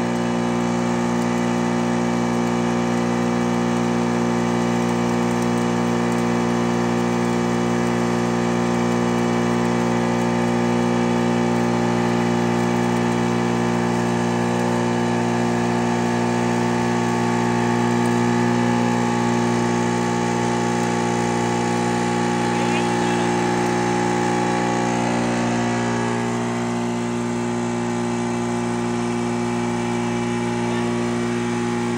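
Pulverizer grinding mill running steadily while grain is poured into its hopper: a loud, even machine hum that drops slightly near the end.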